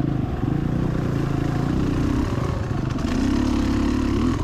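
Beta X-Trainer 300 single-cylinder two-stroke dirt bike engine running on the trail. The revs ease off briefly past the middle, then rise again near the end.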